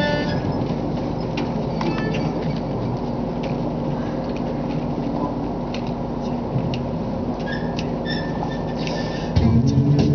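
Low steady room rumble with scattered small clicks. Just before the end, the male a cappella group comes in together on a low held chord, with the bass voices loudest.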